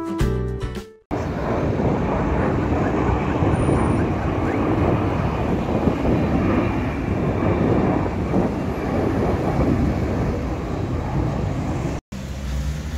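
Airplane flying overhead: a steady rumble of engine noise, mixed with outdoor street noise.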